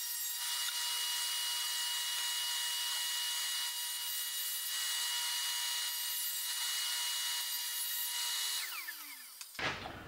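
Table saw running at a steady whine while cutting sheet plywood, the blade hissing through the wood. About eight and a half seconds in, the saw is switched off and its whine falls in pitch as the blade spins down and fades out.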